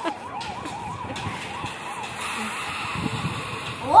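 A warbling siren-like tone, rising and falling about four times a second, played through a phone's small speaker; it fades out about halfway through.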